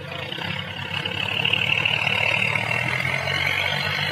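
Sonalika tractor's diesel engine running, growing louder about a second in and then holding steady.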